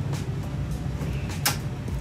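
Handling noise as the TV's plastic back cover is worked with a plastic pry tool: one sharp click about one and a half seconds in, over a low steady hum.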